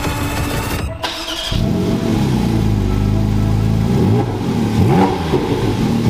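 Background music cuts off about a second in, followed by a car engine running with a low steady note that turns into repeated revs, rising and falling in pitch, from about four seconds in.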